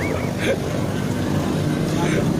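Street traffic: a vehicle engine running steadily as a low rumble. A warbling whistle-like tone trails off right at the start.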